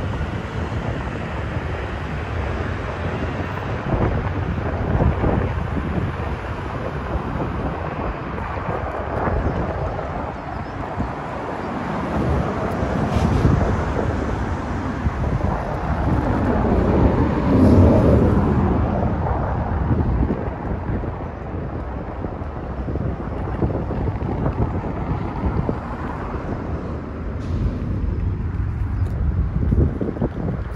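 Wind rumbling on a phone microphone along with street traffic noise, swelling louder for a few seconds a little past the middle.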